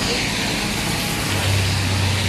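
A low, steady engine hum comes in over a general noisy background about a second and a half in.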